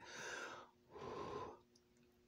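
Two noisy breaths through the mouth, each lasting about half a second, from a person eating food that is still hot.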